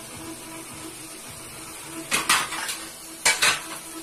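Metal fork scraping and clinking against an aluminium wok while stirring diced vegetables, in two short bursts: one about two seconds in and one near the end.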